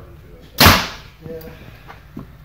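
A 2018 PSE Stealth HL compound bow, set at about 71 pounds, shooting once about half a second in: a sharp crack from the string's release that dies away quickly. A much fainter sound follows under a second later.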